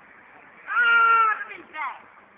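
A long vocal call held on one high pitch for well over half a second, then a shorter call that falls in pitch.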